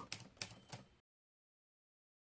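Near silence: a few faint clicks in the first second, then the sound cuts off to dead silence.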